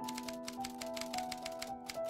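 Rapid typewriter keystrokes, a quick run of sharp clacks, over background music with held notes.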